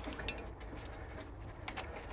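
Faint scattered clicks and light taps of a small plastic electric water-dispenser pump and its hose being handled, over a low steady hum.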